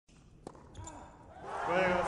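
A single sharp hit of a tennis ball on an indoor hard court about half a second in, then a man's voice rising loudly over the crowd in the last half second.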